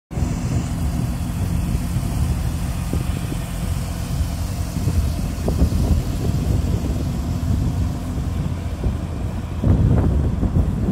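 Porsche 911 Carrera 4S (991.1) 3.8-litre flat-six idling steadily.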